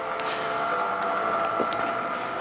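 A steady machine hum with several fixed tones, and a faint tick about one and a half seconds in.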